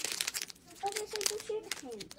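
Crinkling and rustling of a packet being handled, thick with crackles in the first half second, then a voice speaking briefly.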